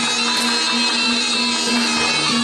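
Live Jaranan Thek accompaniment: a buzzy, bagpipe-like double-reed shawm (slompret) holds a steady melody over struck gamelan instruments.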